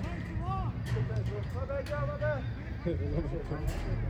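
Distant men's voices calling and talking on a soccer pitch, faint and broken up, over a steady low rumble.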